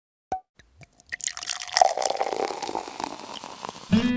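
Water dripping and plopping: a few single drops at first, thickening into a quick dense patter about a second in, then thinning toward the end.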